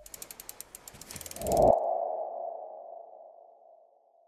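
Logo-animation sound effect: a quick run of ticking clicks, then a single mid-pitched ringing tone about a second and a half in that fades away slowly.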